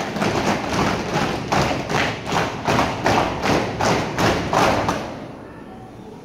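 A platoon of cadets marching in step on a concrete floor, their shoes stamping down together in a regular beat of roughly two and a half to three steps a second. The stamping stops about five seconds in as the platoon comes to a halt.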